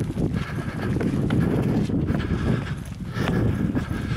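Running footfalls on a rocky, sandy trail, an irregular patter of knocks, over a steady low rumble of wind on the microphone.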